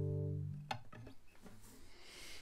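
A closing G major chord on a nylon-string classical guitar ringing out and fading, then stopped by the hand about half a second in. A faint click follows.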